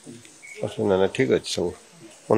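A man's voice speaking briefly in a short burst, preceded by a brief high-pitched chirp.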